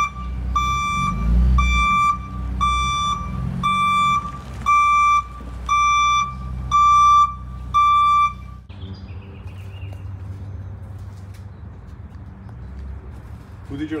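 A van's reversing alarm beeping about twice a second over the low run of its engine as it backs into the driveway. The beeping stops about eight and a half seconds in, leaving a quieter outdoor background.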